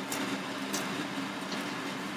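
A hand mixing flour and water into roti dough in a steel bowl, with a few faint sharp clinks of bangles on the wrist, over a steady low hum.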